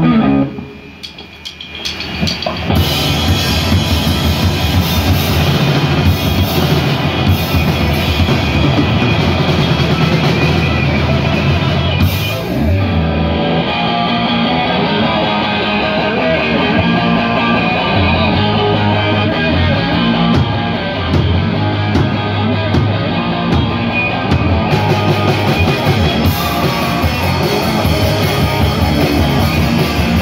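Live rock band playing loud: a drum kit and electric guitars. After a brief quieter gap in the first two seconds, the full band comes in.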